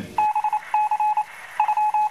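Electronic beeping: three short bursts of rapid beeps, all at one pitch, each burst lasting about half a second.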